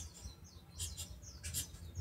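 Pen writing on paper: short, faint scratchy strokes with small squeaks.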